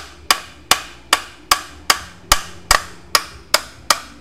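Steady run of about ten sharp metal knocks, roughly two and a half a second: pliers used as a makeshift hammer striking an old VW Beetle speedometer to drive out its speedo cable tube.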